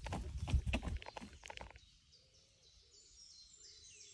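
Running footsteps on a wooden boardwalk for a little under two seconds, then they stop and faint bird calls are heard: a series of short high chirps, with lower short calls repeating beneath them.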